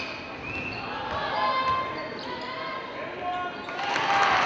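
Basketball bouncing on a hardwood gym floor, a few knocks echoing in the hall, with players' and spectators' voices over the room noise.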